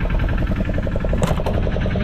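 A fishing boat's engine running with a steady, rapid chugging rhythm, and a brief sharp knock about a second and a quarter in.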